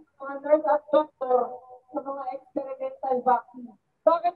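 A man's voice amplified through a handheld microphone and loudspeaker, in short phrases with brief gaps.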